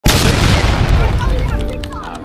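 A loud cinematic boom sound effect that hits at once and fades away over about two seconds, with music coming in near the end.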